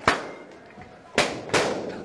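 Latex balloons bursting as they are stamped on: three sharp bangs, one near the start and two close together just past the middle, each with a short ringing tail.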